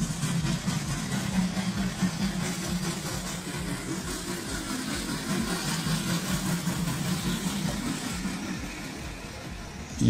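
Steam locomotive running past at low speed, a steady mechanical running sound that eases a little near the end as it draws away.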